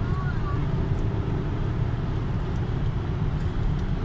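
Car engine and tyre/road noise heard from inside the cabin while driving at speed, a steady low drone.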